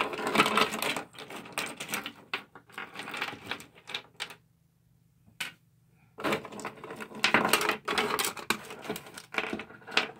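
Small plastic toy accessories clattering and clicking against each other as a hand rummages through a pile of them. The rattling stops for about two seconds in the middle, with one lone click, then starts again.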